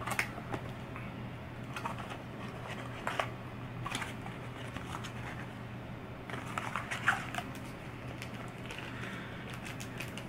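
Cardboard box of wart bandages being handled and opened by hand: scattered small clicks and crinkles of paperboard and packaging, over a faint steady hum.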